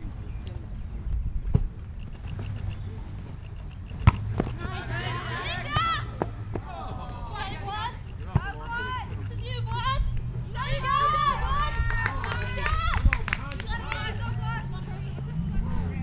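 High-pitched voices shouting and calling across a soccer field, too distant for words to be made out, over a steady low rumble, with a few sharp knocks in between.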